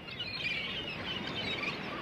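Several birds chirping at once, many short overlapping calls over a steady background hiss.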